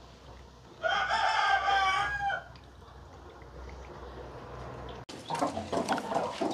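A rooster crows once, a single call of about a second and a half starting about a second in. Near the end come scattered light clicks and rustles.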